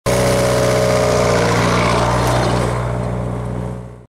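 Nuffield tractor engine running steadily as the tractor drives past close by, then fading away as it moves off.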